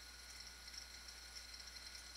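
Near silence: room tone with a faint steady low hum and hiss.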